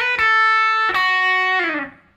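Electric guitar playing a single-note lead line that doubles the vocal melody. It steps down through three notes, and the last one slides down in pitch and fades away near the end.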